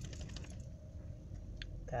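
Steady low rumble of a car interior, with a few faint light clicks in the first half second and another near the end.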